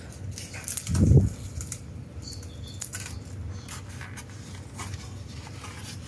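Rustling, scraping and light clicks of hands handling a diecast model car on its black plastic display base, with one brief, louder low bump about a second in.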